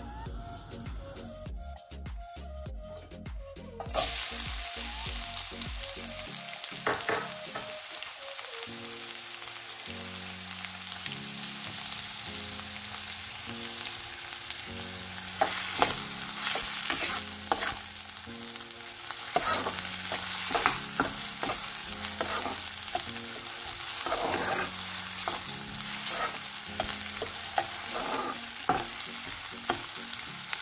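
Chopped onions frying in hot oil in a metal kadai: a loud sizzle starts suddenly about four seconds in and runs on steadily, with a steel spoon knocking and scraping against the pan as they are stirred. Soft background music plays underneath.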